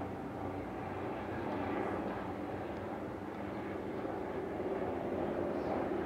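Steady low background hum with a faint hiss, with no distinct events.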